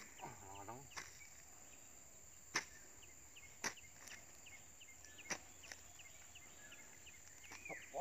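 A hoe chopping into damp soil while digging for earthworms: sharp, separate strikes about every second or two, five in all.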